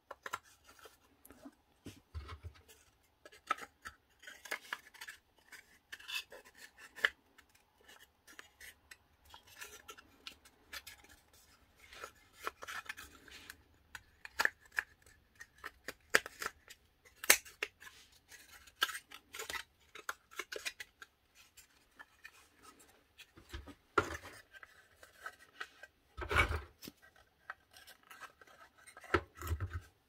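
Thin laser-cut plywood pieces being fitted together by hand into a small box: irregular small clicks, taps and scraping as wooden tabs slot and rub into each other, with a couple of louder knocks in the last few seconds.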